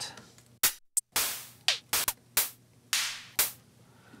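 Drum-machine hi-hat samples auditioned one after another: about eight separate hits at uneven spacing, some short and closed, some open hats ringing out for about half a second.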